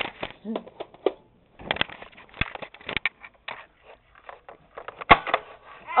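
Clatter of plastic clicks and knocks from Nerf foam-dart blasters being handled and fired, with two sharper knocks about two and a half and five seconds in. Brief bits of voice come in among them.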